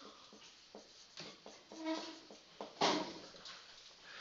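Marker writing on a whiteboard: a few short strokes and brief squeaks, the loudest a little under three seconds in.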